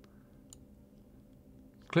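Quiet room tone with a faint steady hum, and one faint computer mouse click about half a second in as the Open button is pressed.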